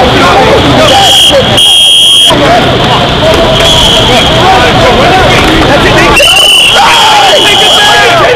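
A referee-style whistle blown in two long blasts, about a second in and again near the end, with a short fainter toot between them. Voices shout and call throughout.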